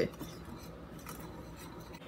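Faint sound of a small metal whisk mixing dry flour and sugar in a ceramic bowl.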